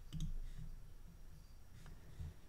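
Faint computer mouse clicks, one just after the start and another near the end, over quiet room tone.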